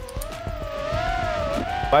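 A racing quadcopter's electric motors whining in flight, the pitch rising and falling gently as the throttle changes.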